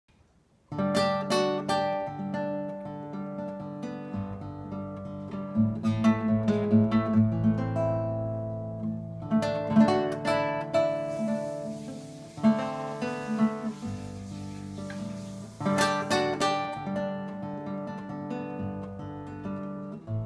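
Nylon-string classical guitar played fingerstyle, a steady run of plucked notes and chords that begins just under a second in.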